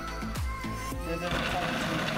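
Background music with a steady drum beat; a little over a second in, a food processor starts blending frozen bananas and berries, an even whirring noise under the music.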